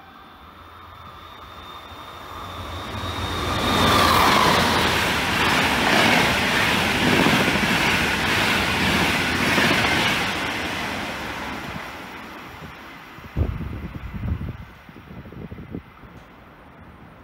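Electric-hauled passenger train passing through the station at speed. The rush of wheels and coaches swells, holds for several seconds and fades, with a high whine that drops in pitch as the locomotive goes by about four seconds in. A few low thuds follow near the end.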